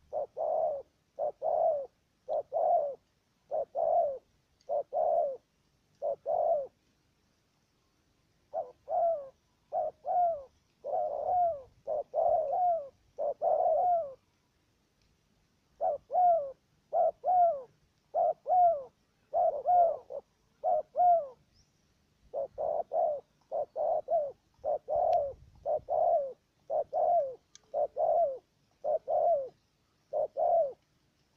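Spotted doves cooing: runs of short, repeated coos at about two a second, in four bouts broken by pauses of a second or two.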